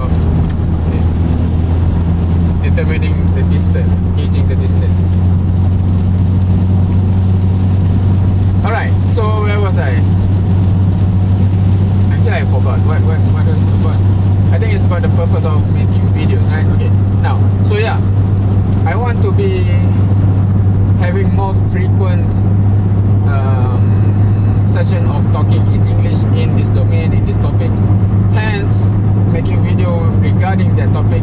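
Steady low drone of a car's engine and road noise inside the cabin while driving in rain, loud enough to bury a voice.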